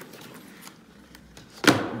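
Faint handling of a cardboard shoebox as its lid is lifted off: light clicks and rustles, then a sharp knock near the end.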